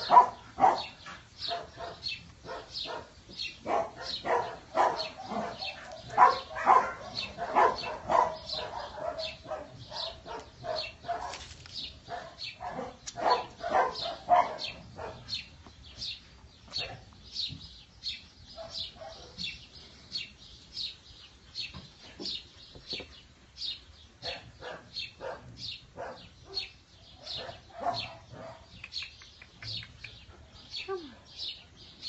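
Young dogs yapping and yipping in play: many short barks in quick succession, busiest in the first half and sparser later.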